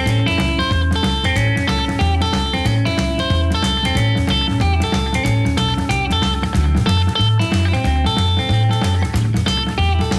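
Gretsch hollowbody electric guitar fingerpicked, playing a 12-bar blues in A with a rockabilly swing. A steady run of low thumb-picked bass notes sits under short picked notes on the higher strings.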